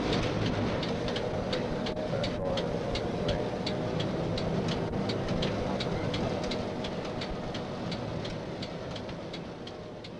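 Budd RDC diesel rail car running at a grade crossing: a steady low engine rumble with a regular clicking about four times a second, fading over the last few seconds.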